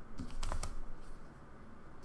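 A quick run of about five computer keyboard keystrokes with a soft thump, about half a second in.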